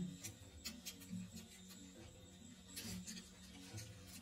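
Quiet eating: a few faint, scattered clicks and mouth sounds of people chewing, over a low steady hum.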